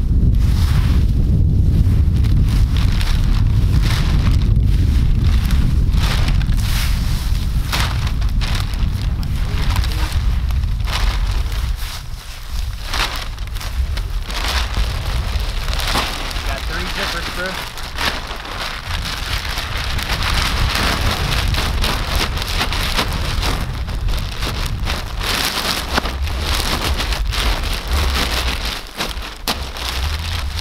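Low wind rumble on the microphone through the first twelve seconds, under a dense run of crackles and rustles from a newly lit campfire and a black plastic bag being handled on dry leaves; the crinkling gets busier in the second half.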